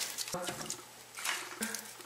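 Split firewood logs being set into a masonry stove's firebox: a few light wooden knocks and scrapes as they are stacked.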